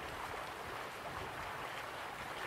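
Steady flowing water of a stream, an even rush with no pauses or swells.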